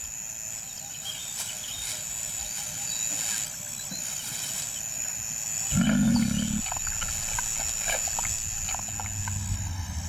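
Lion cubs playing, one giving a short, low growl about six seconds in, over a steady high-pitched whine.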